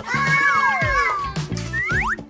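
Playful children's background music with a steady beat, overlaid with cartoonish pitch-gliding sound effects: a long falling glide in the first second and quick rising glides near the end.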